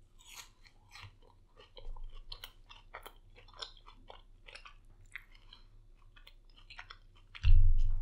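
A crunchy chip being bitten and chewed close to the microphone: a run of sharp crunches, thinning out to softer, sparser chewing. A low thump comes near the end.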